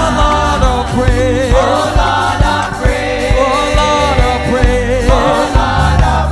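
Gospel praise singing by a small group of women vocalists on microphones, held notes bending in pitch over instrumental accompaniment with a steady beat.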